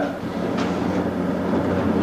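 Steady rushing noise with a low hum underneath, and a faint tick about half a second in: background room and recording noise.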